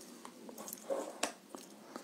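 Quiet small-room pause filled with a few faint mouth clicks and ticks, and a soft breathy murmur from the man about a second in.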